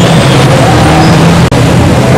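Loud, steady street traffic noise: a continuous rumble and hiss of passing vehicles.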